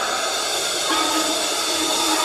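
Live hard-rock band opening a song: held keyboard chords that change about a second in, over a wash of cymbals.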